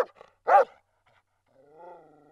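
A dog barking: two short barks about half a second apart, then a longer drawn-out call near the end.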